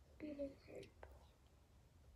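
Two short, quiet wordless vocal sounds from a girl in the first second, followed by a faint click.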